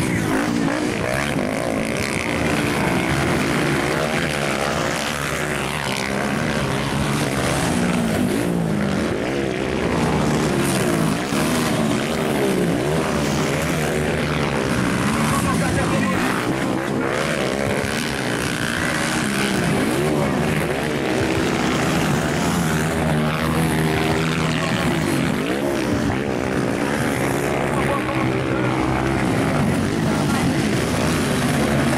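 Motocross bike engines racing on a dirt track, several at once, revving up and down as the riders accelerate out of turns and shift.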